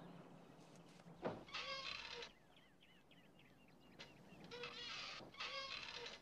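A parrot giving several short, high, bleat-like calls, each about half a second, with faint twittering chirps between them; a single knock sounds about a second in.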